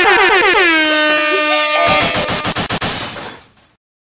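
DJ air-horn sound effect: one long blast that slides down in pitch at the start and then holds. About two seconds in it breaks into a fast chopped stutter and fades out.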